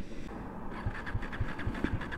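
KTM Duke 250's single-cylinder engine being cranked on its electric starter after dying from fuel starvation: faint, uneven low thuds under a light starter whine, turning into regular firing as it catches at the very end.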